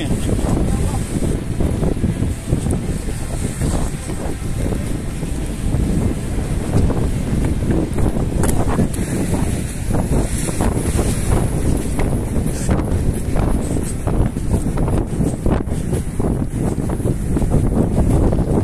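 Strong wind buffeting the microphone: a loud, steady rumbling rush with irregular knocks through it.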